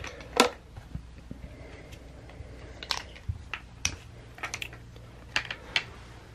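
Hollow plastic shape-sorter blocks and bucket being handled by a baby: light, scattered clacks and taps of plastic on plastic, a few seconds apart.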